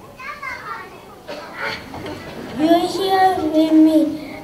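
A child's voice speaking on stage, ending in one long drawn-out vowel held at a steady pitch over the last second and a half.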